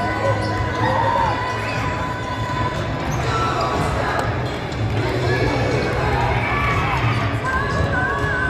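A basketball being dribbled on a hardwood gym floor, with the voices of the crowd around it.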